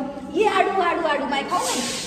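A person talking briefly, then a hissing swish starting about three-quarters of the way in.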